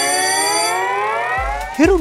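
Electronic rising tone from a TV title sting: a stack of tones glides slowly upward and fades out about a second and a half in, as a low bass comes in. A man starts speaking right at the end.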